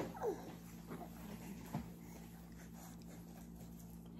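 A baby's few faint, short whimpers, the first falling in pitch, over a steady low hum.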